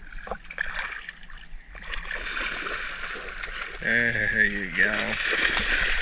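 Shallow water splashing and sloshing as a small bait net is worked through grassy water and muck, with a short wordless voice about two-thirds of the way through.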